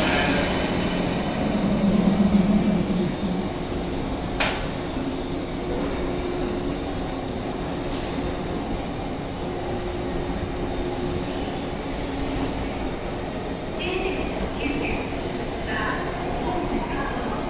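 JR 185 series electric multiple unit pulling slowly out of the platform, its running gear making a steady low hum and rumble, with a sharp click about four seconds in.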